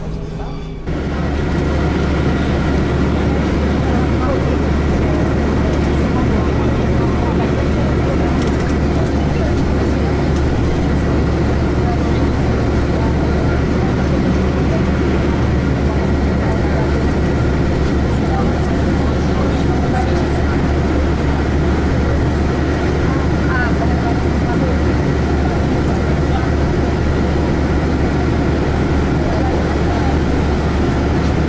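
Steady cabin noise inside a moving airport apron bus: a constant low engine and road drone, with passengers' voices in the background.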